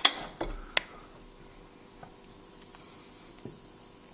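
Metal cutlery clinking against a ceramic plate: three sharp clinks in the first second, the first the loudest. After that only a faint steady hum and a couple of light ticks.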